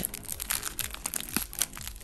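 Clear plastic bag of loose sequins crinkling as it is handled and opened, with many light irregular clicks as the sequins shift inside.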